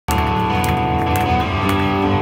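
A punk rock band playing live, heard through the club: electric guitars and bass holding chords over drums, with sharp drum or cymbal hits about twice a second. It is the song's instrumental opening, before the vocals come in.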